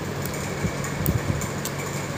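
Steady mechanical hum with a low steady tone, with a few faint light ticks on top.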